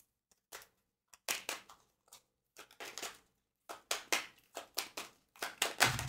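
A deck of cards being shuffled by hand to draw a card: quick, irregular papery slaps and riffles, with a brief pause about two seconds in.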